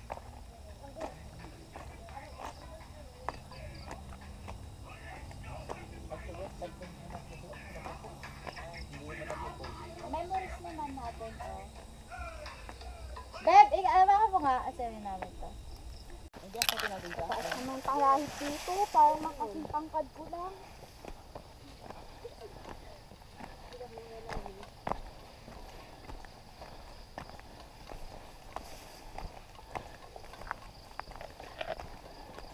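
People's voices talking and calling out, loudest in two short stretches around the middle, over a low steady background with scattered small clicks.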